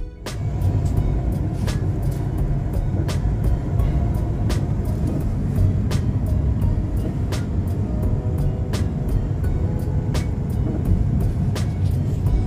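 A car driving, heard from inside the cabin: a loud, steady low rumble of road and engine noise, with regular thumps about every second and a half, under faint background music.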